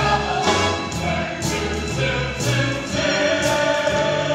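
Stage-musical ensemble singing together over instrumental accompaniment with a walking bass line and a steady beat, heard from the audience seats of a theatre.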